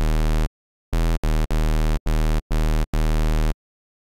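Xfer Serum synth playing a raw square wave as a bass: a buzzy, bright tone at one low pitch, struck as about seven short notes of uneven length that start and stop dead, with silence between them.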